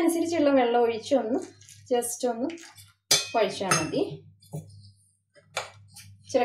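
A metal spoon clinks and scrapes against a stainless-steel bowl while water is stirred into flour, with a woman talking over it. Near the end there is a single sharp knock.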